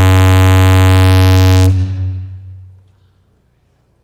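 Loud electrical buzz from the meeting's sound system: one steady low pitched tone with many overtones that cuts off under two seconds in and fades away over the next second, leaving near silence. It is the sign of a microphone or sound-system fault, after which the speaker's microphone is dead.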